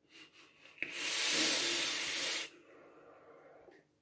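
Vape mod being drawn on: a sharp click, then a steady hiss of air and vapour pulled through the atomizer for about a second and a half, followed by a faint exhale.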